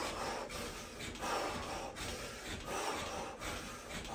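A person breathing hard through exertion: short, rasping breaths about every two-thirds of a second.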